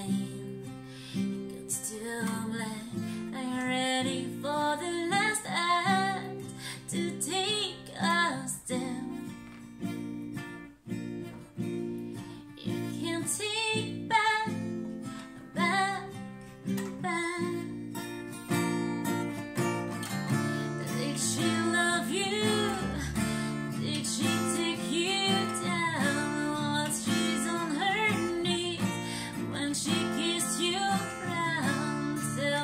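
A woman singing while playing an acoustic guitar.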